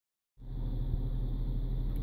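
Dodge Charger police car idling, a steady low hum heard from inside the cabin, starting a moment in.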